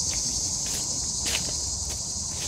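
Insects chirring in a steady, high-pitched drone, with soft footsteps on grass about every half second.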